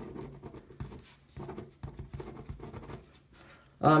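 Uni Jetstream 0.7 mm ballpoint pen writing on paper: faint, irregular scratching strokes of the tip across the sheet. The pen glides smoothly.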